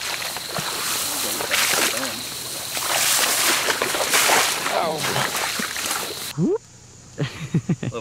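Swamp water sloshing and splashing as people wade through it, with faint voices under it. The sound stops abruptly about six seconds in.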